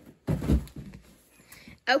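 A single dull thump about half a second in: a child's hands and feet landing a cartwheel on foam gym mats.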